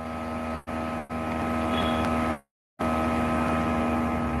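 A steady buzzing hum with a fixed pitch coming over a Zoom call's audio, cutting out briefly three times, longest near the middle.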